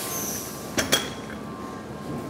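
Glass jars clinking against each other in a cardboard box as it is set down on a stainless-steel table: two sharp clinks close together about a second in, each with a brief ring.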